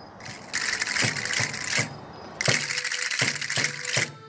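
Traditional Canarian folk castanets clattering in a fast, steady rhythm with regular drum strokes, in two runs broken by a short pause about two seconds in.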